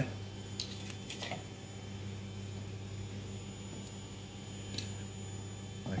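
A steady low hum with a few faint clicks and taps from food and cutlery being handled on a plate.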